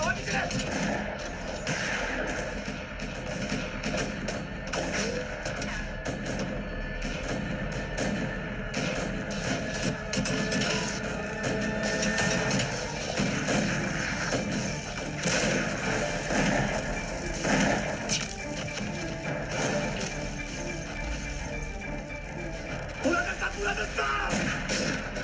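Film soundtrack: background music mixed with voices and many short, sharp knocks or impacts throughout.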